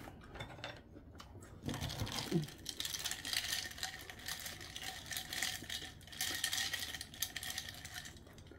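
A long spoon stirring ice in a tall glass: a quick, continuous run of light clinks against the glass from about two seconds in, stopping just before the end.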